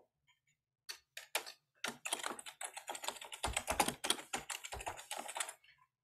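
Typing on a computer keyboard: a few separate key presses, then a quick, steady run of keystrokes for about three and a half seconds that stops shortly before the end.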